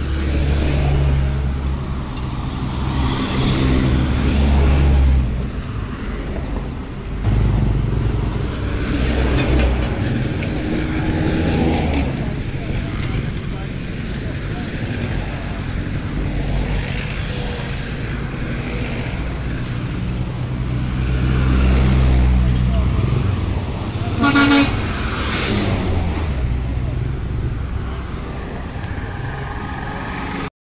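Busy road traffic: vehicle engines rumbling past, swelling and fading, with a short car horn toot about 24 seconds in.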